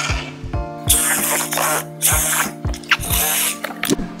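Background music with several loud, hissing rips as packing tape on a cardboard box is slit and torn open with a cutting tool.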